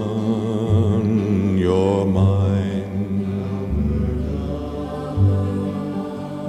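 A man singing a slow folk ballad, drawing out long, wavering notes over low sustained tones that change about every second and a half.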